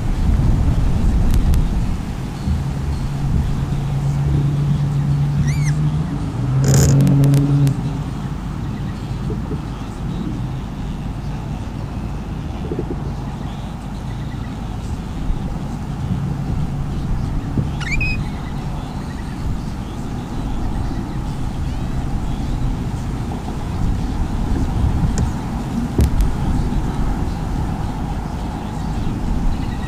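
Low outdoor rumble with a steady low hum for the first several seconds, like a motor running some way off. Two brief rising chirps from a small bird, about six seconds in and again near eighteen seconds.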